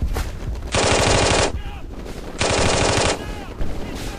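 Machine-gun fire sound effect: two bursts of rapid fire, each under a second long, about a second apart.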